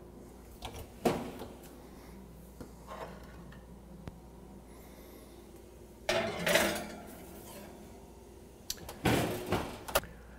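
Oven door and metal baking pan being handled: a sharp knock about a second in, a scraping clatter about six seconds in as the pan slides onto the oven rack, and another clatter near the end.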